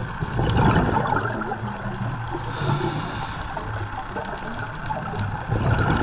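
Muffled underwater gurgling and bubbling picked up by a camera during a scuba dive. It swells louder briefly about half a second in and again near the end.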